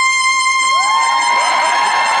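An alto saxophone holding one high, steady note, the closing note of a jazz duet. Audience cheering and shouting swells under it from about a second in.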